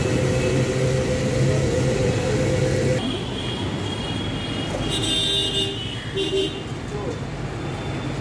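A steady motor hum with an even pitch cuts off suddenly about three seconds in. Then come a few short, high electronic beeps, about two and three seconds later, over traffic noise.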